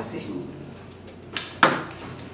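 Two sharp knocks about a second and a half in, the second the louder and ringing on briefly: a wooden shoe cabinet being handled as shoes are pulled from its shelf.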